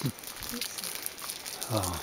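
Wind rustling and crackling on the camera's microphone, a low steady noise with faint crackles, while the camera is moved. A man's voice starts again near the end.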